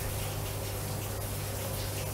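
Steady low hum with a faint even hiss: the background noise of the voice recording in a pause between sentences.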